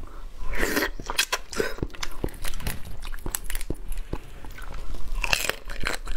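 Close-up eating sounds: a person biting and chewing on a female crab's body, with crunches and sharp clicks of shell. There are two longer noisy stretches, about half a second in and near the end.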